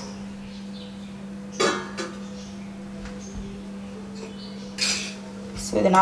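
A metal spoon knocking against a glass mixing bowl, with a short ringing clink about a second and a half in and a brief scrape near the end, over a steady low hum.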